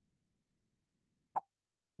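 A near-silent pause broken once by a single brief click, a little past the middle.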